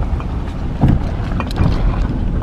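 Low, steady rumble of a car driving slowly, heard from inside the cabin, with a few light knocks about a second in.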